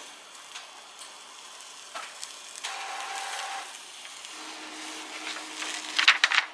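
Glitter DTF transfer film being peeled slowly off heat-pressed fabric: a soft, continuous crackle as the cooled film releases from the printed design. A faint steady hum from a printer running a printhead cleaning comes in underneath in the second half.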